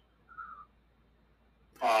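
A pause in speech: near-silent room tone with one brief faint murmur about half a second in, then a man's voice resumes with an 'uh' near the end.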